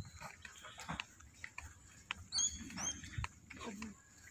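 Footsteps and small clicks on a grassy path, with a few short, high whistled bird calls about two and a half seconds in.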